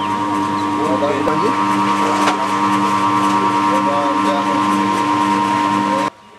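A machine running with a steady, loud hum of several fixed tones, with indistinct voices talking over it. The hum cuts off suddenly at the end.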